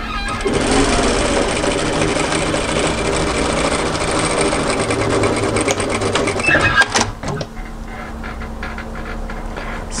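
Industrial flat-bed lockstitch sewing machine running steadily as it stitches a seam through two layers of woven fabric. It starts about half a second in and stops at about seven seconds with a few sharp clicks, leaving a quieter steady hum.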